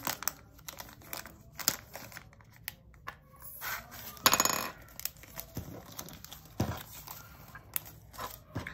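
Square diamond-painting drills rattling as they are poured into a small plastic storage bottle, with a dense clatter about four seconds in; light clicks of plastic bags and containers being handled around it.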